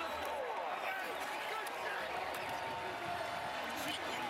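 Stadium crowd cheering and shouting just after a touchdown: a steady mass of many voices at once.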